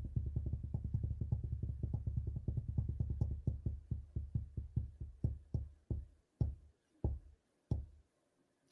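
Online giveaway tool's drawing sound effect: a rapid run of low ticks that slows steadily, like a prize wheel winding down, and stops with the last few clicks spaced wide apart.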